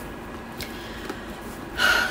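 A woman's sharp, excited intake of breath, a gasp near the end, just before she exclaims in delight.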